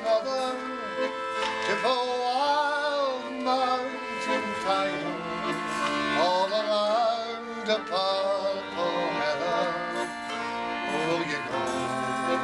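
Man singing a slow Scottish folk song verse, a woman's voice joining, over a piano accordion and a strummed banjo.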